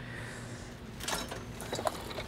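Quiet clicks and rustles of wiring and plastic clips being handled under a stripped car's dashboard, over a low steady hum. The clicks bunch up in the second half.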